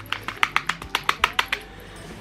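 About a dozen quick, sharp clicks, roughly eight a second, from a small red plastic lighter being fiddled with in the hands. The clicks stop about a second and a half in.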